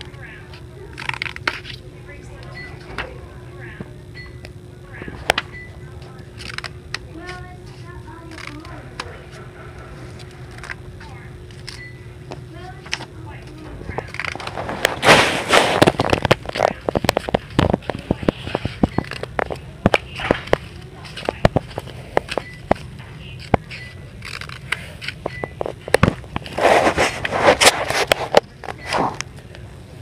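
Scissors snipping through a thick stack of folded paper: a string of sharp snips, with two denser stretches of cutting and paper rustling, about halfway and near the end. A steady low hum runs underneath.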